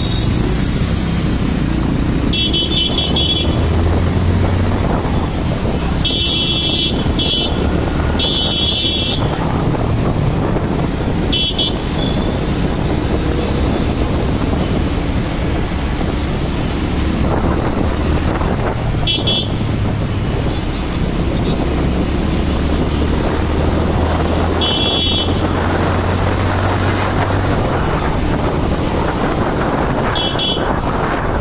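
Motorcycle engine running in dense city traffic, with a steady rush of wind and road noise. Short vehicle-horn toots come from time to time, about seven over the stretch, some in quick pairs.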